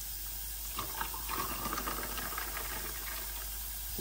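Star fruit drink poured from a glass pitcher into a tall glass of ice cubes. The pour runs steadily from about a second in until shortly before the end.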